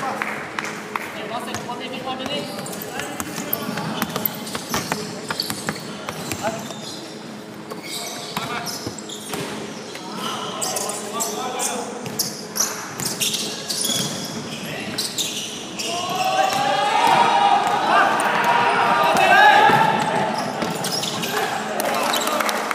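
Indoor basketball game: the ball bouncing and thuds and squeaks of play on a hardwood gym floor, echoing in the hall, with players' voices that are loudest in the last several seconds.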